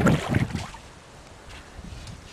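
Bare feet splashing through shallow water: two splashing steps in the first second, then a quieter stretch.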